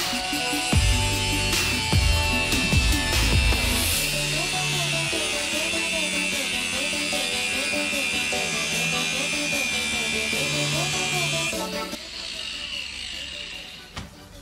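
Angle grinder grinding a small steel plate, a steady high whine that stops a couple of seconds before the end, under background music with a bass line.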